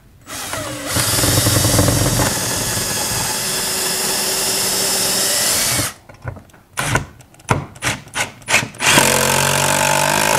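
A cordless drill/driver runs steadily for about five seconds, driving a lag bolt through a steel TV wall-mount bracket into the wall. A few short clicks and knocks follow, and the driver starts again near the end.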